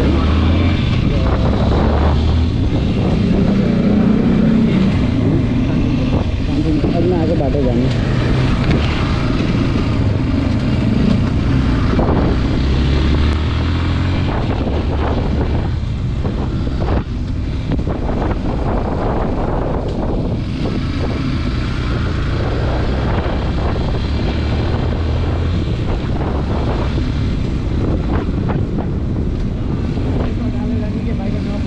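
Yamaha motorcycle engine running while being ridden at low speed, its pitch shifting in steps, with wind rushing over the microphone.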